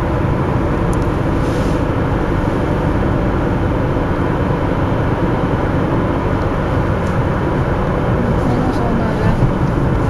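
Steady road and engine noise heard from inside a moving car's cabin, a low, even rumble throughout.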